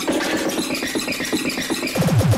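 Break in a speedcore track: the fast pounding kick drum drops out suddenly, leaving a harsh, distorted electronic noise texture with no beat.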